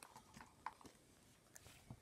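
Near silence: room tone with a few faint, scattered clicks and taps from paint pots and brushes being handled.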